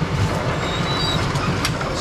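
Brunswick bowling pinsetter running: a steady mechanical clatter and rumble, with a sharp click near the end.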